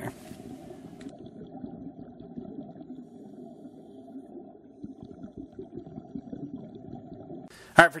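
Muffled, low underwater rumble with no distinct events, the sound of a camera in an underwater housing in a pool. It stops shortly before the end.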